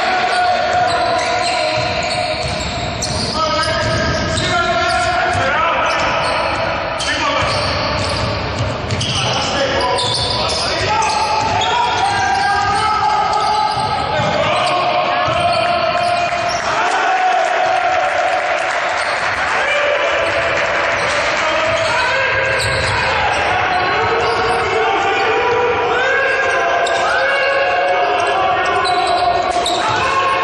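Basketball game on a hardwood gym court: the ball bouncing as players dribble, with voices of players and coaches calling out, echoing in the large hall.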